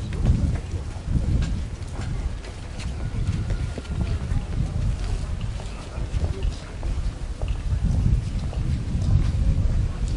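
Wind buffeting the microphone: an uneven low rumble that rises and falls in gusts, loudest just after the start, around the middle and near the end.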